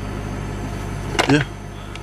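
A steady low hum runs under a man's short "yeah" a little past one second in.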